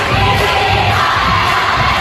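Large crowd of students cheering and shouting in a school hall, loud and unbroken.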